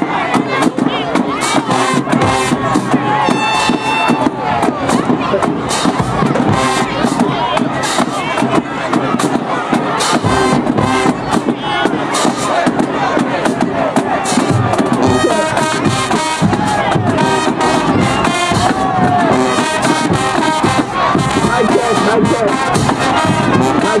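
High school marching band playing brass and drums, with a crowd cheering and shouting over it.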